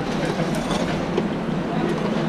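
Steady background din of a busy professional kitchen, with a few light clicks of metal tongs against a perforated stainless steel tray.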